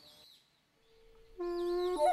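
Closing music: after a near-silent gap, a single held flute-like note starts suddenly about one and a half seconds in and bends upward at the very end.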